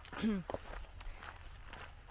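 Footsteps of a walker on a dirt track, a few faint steps about half a second apart, with a brief falling murmur from a woman's voice near the start.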